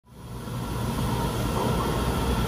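Steady low rumble of a vehicle in motion, fading in over about the first second.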